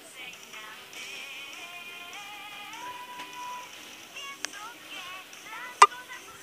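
A pop song sung by girls with backing music, thin and without bass, with one note held for under a second about halfway through. A sharp click near the end is the loudest sound.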